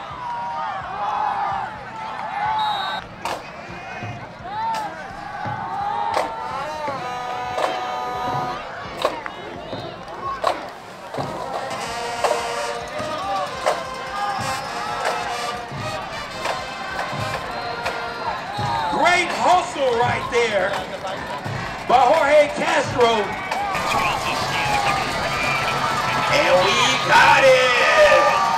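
Crowd in the stands at a football game: many voices talking and shouting at once, mixed with band music and regular drum hits, growing louder in the last few seconds.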